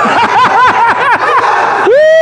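A man's excited, high-pitched voice in a rapid string of short rising-and-falling syllables, several a second, much like laughter.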